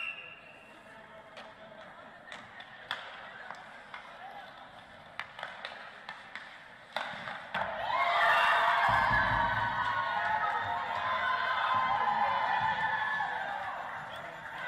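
Ice hockey sounds in a near-empty arena: scattered clicks and taps of skates, stick and puck on the ice, then a sharper knock about seven seconds in. From about eight seconds, a team of women players cheers and screams loudly, and the cheering keeps going as they rush across the ice to celebrate.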